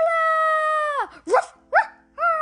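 Yorkshire terrier howling: one long held high note that drops away about halfway through, then two short rising yelps.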